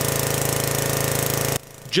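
A loud machine running with a fast, steady pulse, cutting off abruptly near the end.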